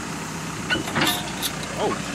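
Caterpillar backhoe's diesel engine idling steadily, with a short cluster of sharp cracks or clicks about a second in.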